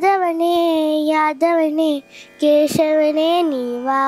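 A young girl singing a devotional song solo, without accompaniment, in long held notes that slide between pitches, with a short breath pause about two seconds in.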